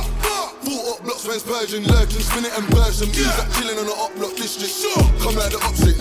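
UK drill track playing: a male rapper over a drill beat whose deep bass notes slide down in pitch several times.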